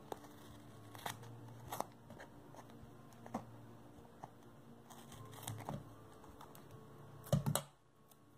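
Scissors cutting through card stock and double-sided adhesive tape to trim the excess: a series of faint, short snips. A louder thump comes near the end.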